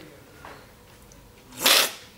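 A short, loud slurp of tea from a tasting spoon about one and a half seconds in, liquid drawn in with a rush of air.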